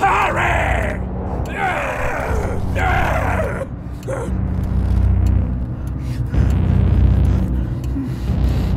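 A man groaning and straining three times in quick succession, over a low rumble and a film score.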